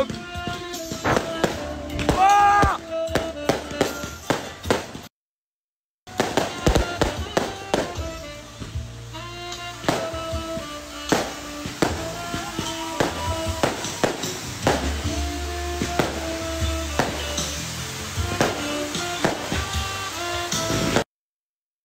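Music with a melody, overlaid with frequent sharp crackles and pops from fireworks. The sound cuts to silence for about a second just after five seconds in, then resumes.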